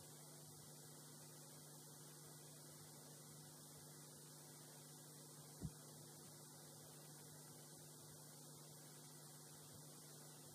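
Near silence, with a steady low electrical hum on the audio line. About five and a half seconds in there is a single short thump.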